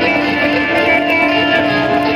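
Electric guitar solo played live through an amplifier, with long held notes over a full band.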